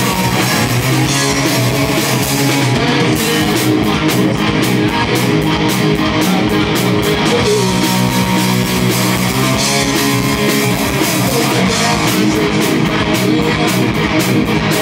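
Live rock band playing loudly and steadily: two electric guitars, an electric bass and a drum kit.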